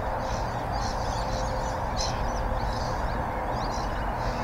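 Outdoor ambience: birds chirping now and then over a steady background rush.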